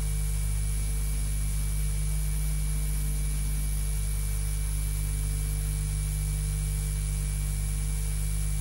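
Steady electrical mains hum with a hiss over it, unchanging throughout, with a few faint steady whine tones higher up.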